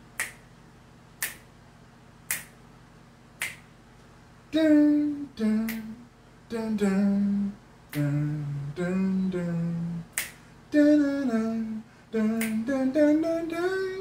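Finger snaps keeping a slow, steady beat, about one a second. After about four and a half seconds a man's wordless singing of a melody joins in over the snaps.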